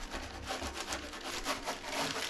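A baren being rubbed over the back of a sheet of printing paper laid on an inked woodblock, in quick back-and-forth strokes: the hand-burnishing that transfers the ink in Japanese woodblock printing.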